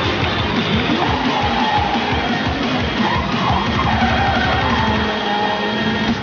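Background rock music with electric guitar and a steady beat.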